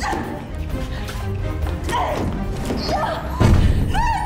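A hand pounding on a door, a few heavy thuds with the loudest near the end, over dramatic background music.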